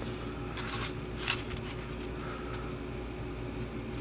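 Faint clicks and rustles of a small clear plastic needle case turned over in the fingers, the sharpest click about a second in, over a steady low room hum.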